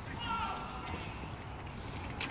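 Outdoor ambience with a steady low rumble of wind on the microphone, a faint voice briefly about a quarter second in, and a few light taps.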